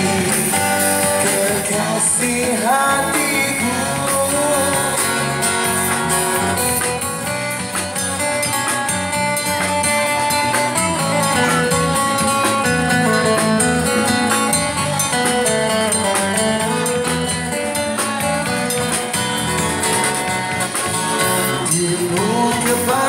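Live band music: electric guitar over bass guitar and a drum kit, played continuously.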